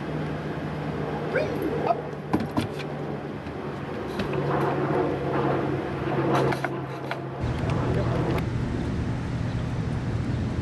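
A few sharp metallic clicks and rattles from a wire dog crate's door being handled, over a steady low hum. About seven seconds in, the sound changes to street traffic rumble.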